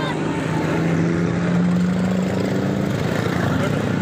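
Auto-rickshaw engine running with a steady drone that fades out about three seconds in, over street traffic noise.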